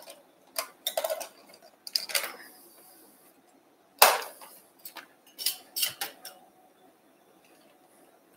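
Metal arthroscopy instruments clicking and clinking as they are handled: a few light clicks near the start, one sharp clack about four seconds in, and another cluster of clicks a second or two later.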